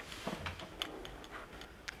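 Quiet room with a few faint, short clicks and handling noises as a clipboard is passed from hand to hand.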